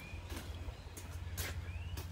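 Outdoor background: a steady low rumble, a few soft knocks of footsteps as the camera is carried along the trailer, and faint rising bird chirps near the end.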